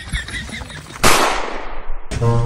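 Scattered shouting from a brawling crowd. About a second in, a sudden loud whoosh-and-hit sound effect bursts in, its hiss sweeping downward for about a second before it cuts off abruptly.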